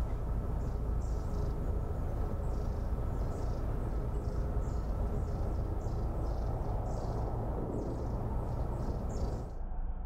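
A steady low rumble with short, high-pitched chirps repeating about twice a second over it. The sound changes abruptly near the end.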